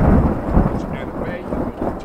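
Loud rumble of thunder, heavy and deep, slowly dying away.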